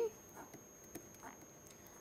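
Very quiet room tone with a faint, steady high-pitched electronic whine, broken by a few faint soft ticks.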